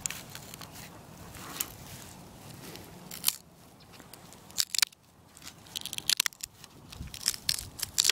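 Small knife blade cutting and scraping into a dry, pithy dead stick, with scattered sharp crackles and snaps of the wood.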